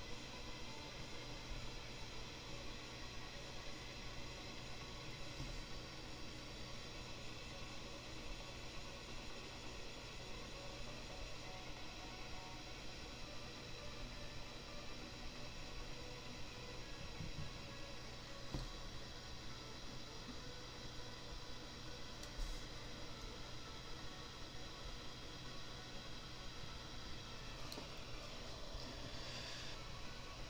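Faint steady hiss and hum of room tone, with a couple of soft clicks in the second half.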